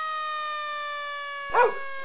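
A steady siren tone with overtones, slowly falling in pitch, with a man's short cry of "no" near the end.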